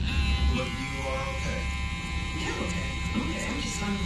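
Cordless hair trimmer running steadily with a constant whine, trimming the hairline around the ear.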